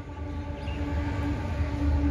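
A steady low hum with a faint held tone running under it, with no speech.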